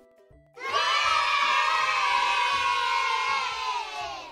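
A crowd of children cheering together in one long shout, starting about half a second in and fading out near the end.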